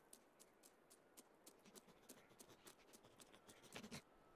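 Faint, quick patter of a cartoon squirrel's paws on snow, a few light crunchy steps a second that come closer and faster, with a louder scuffle near the end.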